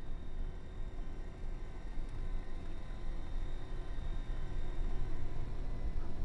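Room tone: a steady low rumble with faint steady hums and no distinct sound event.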